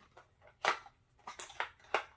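Unboxing packaging handled in the hands: a few sharp crinkles and crackles, the loudest about two-thirds of a second in and smaller ones near the end.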